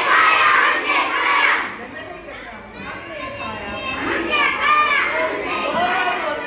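Many children's voices calling out together in a large hall. They are loudest in the first second and a half, drop away, and swell again about four seconds in.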